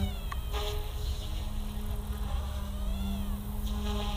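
Small electric RC helicopter flying at a distance: a steady motor and rotor drone whose whine rises and falls about three seconds in, as the automatic flip-rescue rights the helicopter.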